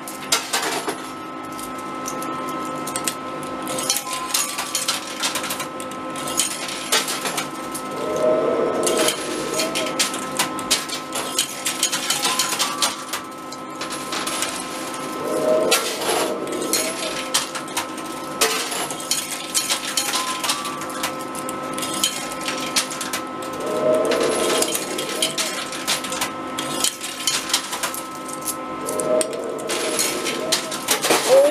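Coins clinking and clattering as they drop onto and shift across the playfield of an arcade coin pusher machine: many irregular metallic clicks over a steady hum of held tones from the arcade.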